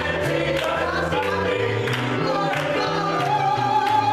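Small gospel choir singing together over an electronic keyboard, with a low bass line under the voices and hand claps on the beat.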